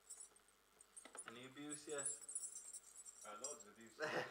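A man's voice, quiet and indistinct, in two short stretches, over a light metallic jingling.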